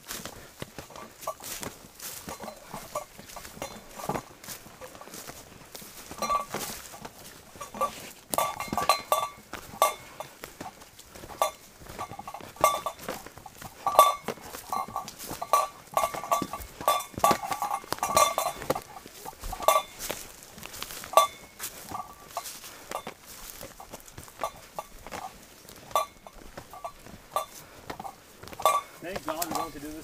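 Footsteps and brush-rustling of hikers climbing a rough forest trail under heavy packs, with irregular knocks and clicks. Short squeaky notes at one steady pitch come and go, thickest in the middle stretch.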